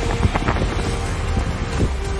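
Wind buffeting the microphone: a steady low rumble, with a few brief knocks in the first half-second.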